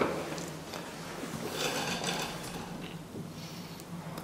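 Rubbing and light knocks from the swing door of a 1980 KONE hydraulic platform lift being handled as the rider steps into the car, over a steady low hum.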